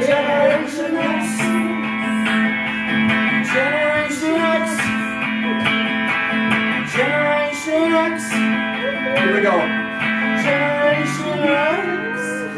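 Electric guitar played through a small amplifier: strummed chords ringing out in a repeating pattern.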